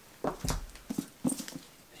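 A book being picked up and handled: a few soft knocks and rustles, mostly in the first second.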